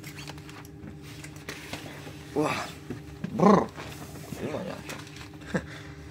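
A man's short, drawn-out groan, loudest about three and a half seconds in, over the steady low hum inside a standing bus, with a few light clicks of handling.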